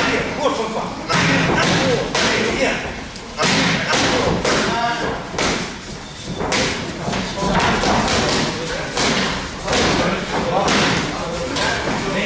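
Boxing gloves striking focus mitts in quick, irregular flurries of thuds and slaps, with short pauses between combinations.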